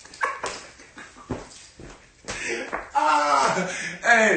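A few short knocks and rustles, then from about halfway a man's loud, high, drawn-out wordless cries, excited vocal outbursts of the kind that laughter makes.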